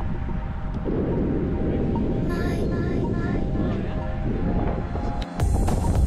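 Background music over a steady low rumble, with a brief break and a change in the sound just before the end.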